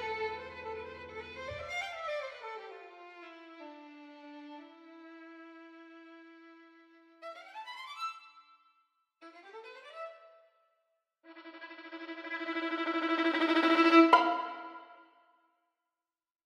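Sampled solo violin playing a slow legato phrase with sliding, gliding connections between notes, then two quick rising scale runs about seven and nine seconds in, then a long held note that swells to a loud peak and fades away near the end.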